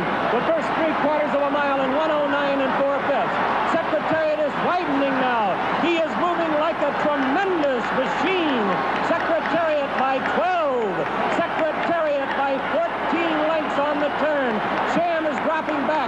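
A horse-race announcer's rapid, excited call over the noise of the racetrack crowd, his voice swooping up and down in pitch.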